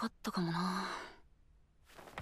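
A single breathy sigh from a person's voice, held on one pitch for under a second and fading away about a second in.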